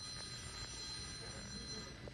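A steady, high-pitched electronic tone, held for about two seconds and cutting off just before the end, over the low background hum of an airport terminal.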